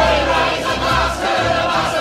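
Music: a large ensemble of voices singing a loud, held chorus over an orchestra, a rowdy crowd number from a musical.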